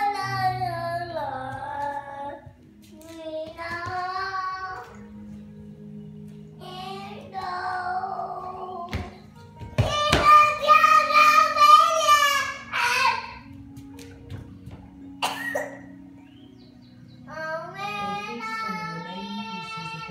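A young girl singing a song in several drawn-out phrases with quieter pauses between them, her voice wavering on the held notes. A few sharp knocks fall in the pauses.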